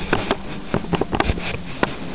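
Camera being handled and set down on a wooden floor: a quick, irregular run of sharp knocks and clicks, about ten in two seconds.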